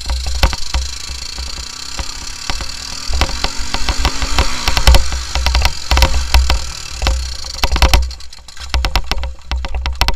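Honda 300EX quad's single-cylinder four-stroke engine running and revving over a rough dirt trail, with many sharp knocks and rattles from the bumps and heavy wind rumble on the body-mounted camera. The engine noise drops away about eight seconds in.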